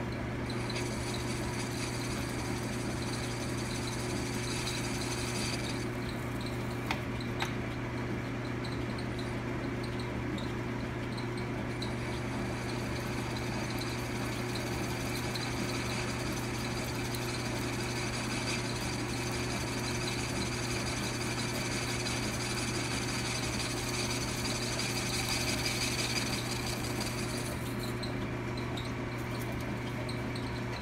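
10-inch Logan metal lathe running with a steady motor hum while a lathe tool, fed by hand, cuts a register into the face of the spinning workpiece. A high cutting sound comes in two spells: for the first six seconds or so, and again from about twelve seconds until a couple of seconds before the end, with two small clicks about seven seconds in.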